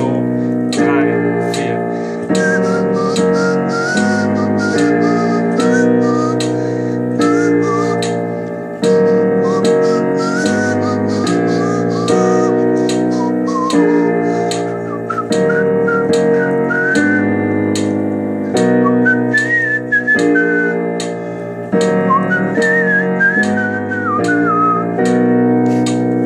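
Digital piano playing a looping chord progression of B major 7, B-flat 7 and E-flat minor in a steady rhythm. From about two seconds in, a whistled melody runs over the chords.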